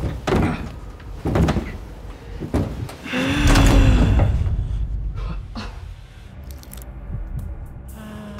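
A hotel room door jamming as it is pulled open: three knocks about a second apart as it catches on something. About three seconds in, a low swell of music rises and fades.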